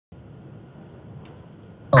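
Faint steady electronic hiss with a few thin, high, steady whine tones, like a recording's noise floor. Just before the end a voice cuts in loudly with "All…".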